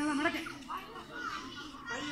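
Children's voices: a group of children calling out and chattering.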